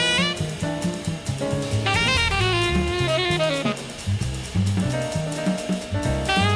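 Jazz background music: a saxophone melody with sliding notes over a drum kit with cymbals, and low notes stepping along beneath.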